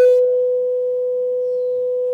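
A steady electronic tone at one mid pitch, held unchanged with a faint higher overtone. Its buzzier upper overtones drop away just after the start. It is interference on the meeting's audio link from a remote participant's connection.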